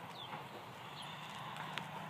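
Horse hooves stepping on dirt: a few faint, light clicks over quiet outdoor background.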